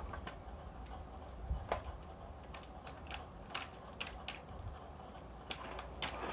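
Computer keyboard keys clicking as a baby's hand bangs and presses them, in irregular scattered clicks, a few louder than the rest.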